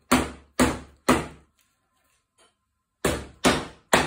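Old, perished rubber mallet striking the oak arm bow of a chair to knock it off its spindles. Six sharp blows about half a second apart: three at the start, a pause of about a second and a half, then three more near the end.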